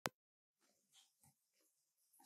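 Near silence, opening with a single sharp click, then two faint, brief soft sounds about a second in.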